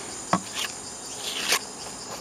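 A plastic gold pan of water being handled during backwashing: two light clicks and a few soft swishes of water, over a steady high-pitched insect drone in the background.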